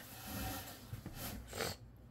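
A person's soft breathing close to the microphone: a longer breathy exhale at the start, then a couple of short breathy sounds about a second and a half in.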